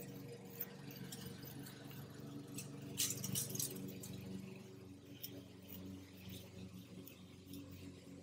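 Sidewalk chalk scraping in short, scratchy strokes on an asphalt driveway, faint, with the strokes busiest about three seconds in, over a faint steady low hum.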